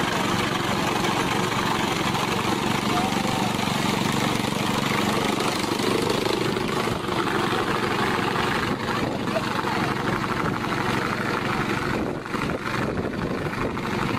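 Small engine of a walk-behind sickle-bar mower running steadily under load as it cuts through tall grass.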